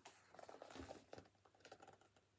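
Faint clicks and soft rustles of a large hardcover book being handled, turned and opened out, over near silence.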